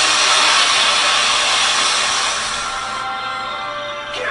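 Superhero TV sound effect of a speedster running: a loud, steady rushing whoosh that fades about three seconds in, over a soft music score.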